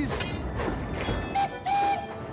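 Steam locomotive rumbling in, then two whistle toots near the end, a short one and a slightly longer one.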